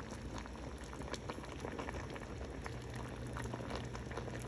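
A pot of pork sinigang broth simmering on the stove, with a steady crackle of many small bubbles popping.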